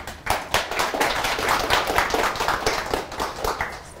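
Audience applauding, with dense clapping that thins out toward the end.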